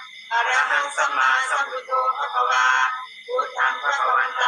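A group of voices chanting a Buddhist Pali recitation in unison, in a steady rhythmic cadence with brief pauses for breath.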